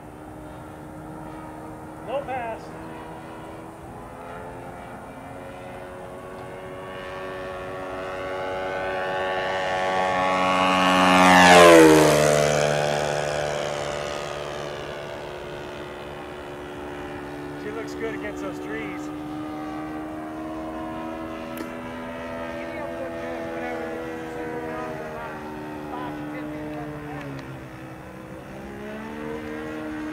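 Saito 1.00 four-stroke glow engine of a Hanger 9 P-40 model airplane, breathing through a Keleo exhaust, running in flight. It grows louder and higher in pitch as the plane comes in on a low pass and peaks about twelve seconds in. The pitch then drops sharply as the plane goes by, and the engine keeps running as it flies off and circles.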